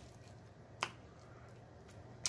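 Quiet chewing of snow crab meat, with one sharp mouth click a little under a second in, over a faint steady low hum.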